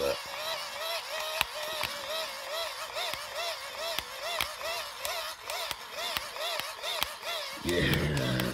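Hand-crank dynamo of a crank-charging flashlight being turned steadily to charge its battery: a geared whirring whine that rises and falls in pitch with each turn, about three times a second, with scattered clicks from the crank mechanism.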